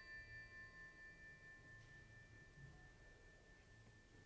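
Faint ringing of a struck tuned metal percussion instrument dying away, a few high bell-like tones fading with a slight pulsing waver and gone within the first few seconds, leaving near silence.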